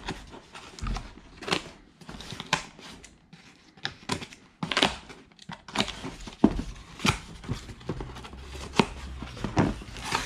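Scissors cutting through the tape and cardboard of a small shipping box in a string of irregular sharp snips and scrapes, then the cardboard flaps being pulled open with rustling.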